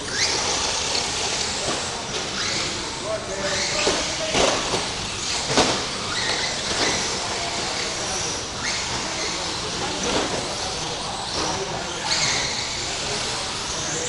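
Several electric 2WD short course RC trucks racing: a steady wash of motor whine and tyre noise, with short rising whines as cars accelerate and a couple of louder passes around the middle.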